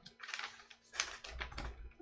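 Sheets of animation paper being handled on a drawing desk: rustling and a few sharp clicks, the loudest about a second in, followed by a low thump.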